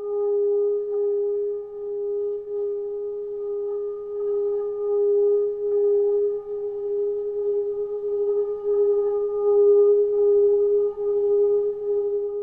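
A single held tone with two fainter overtones above it, unchanging in pitch but swelling and ebbing slowly in loudness: a sustained drone in the closing soundtrack.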